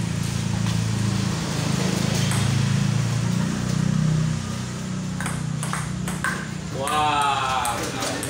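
A table tennis ball clicking sharply several times off the paddles and table in a short rally, over a steady low hum. A man's voice calls out briefly near the end as the point ends.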